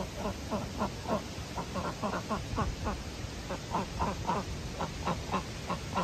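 Pekin ducks quacking in a rapid, continuous run of short calls, about four a second, each falling slightly in pitch.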